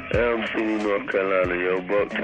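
A voice talking over a telephone line, thin and cut off in the highs, leaving an answering-machine message, with occasional low drum thumps underneath.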